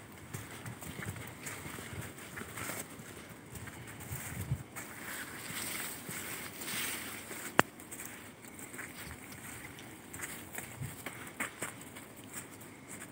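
Footsteps and the rustle of dense weeds and leafy undergrowth brushing past while walking along an overgrown forest path, with one sharp click about two thirds of the way through.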